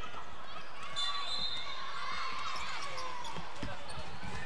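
A basketball being dribbled on a hardwood gym floor during a children's game, with faint voices and shouts echoing through a large hall.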